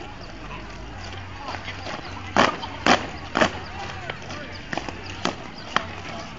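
Drill squad's boots stamping together on brick paving. There are three loud stamps about half a second apart around the middle, then a few lighter, ragged stamps near the end.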